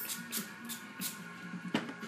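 Pump spray bottle of hair spritz squirted in quick strokes: about five short hisses, the first four coming fast and a last one near the end.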